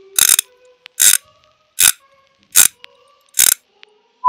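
An edited-in sound effect with a mechanical, ratchet-like character: five short, sharp noisy bursts, evenly spaced about three quarters of a second apart, with faint held tones between them.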